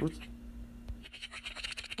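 Faint irregular crinkling and ticking of a glossy paper magazine being handled and lowered.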